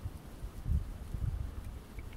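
Wind buffeting the microphone in gusts, a low rumble that swells about a third of the way in.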